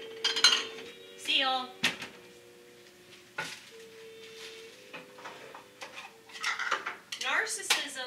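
Clinks, knocks and clatters of kitchen items (jars, cans and mugs) being handled on a cabinet shelf, in several separate clusters with the loudest near the end.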